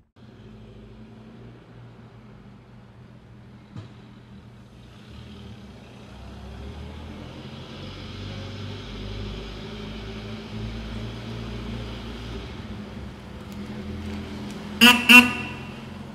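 A vintage car's engine running as the car drives slowly closer, growing louder, then two short horn toots near the end.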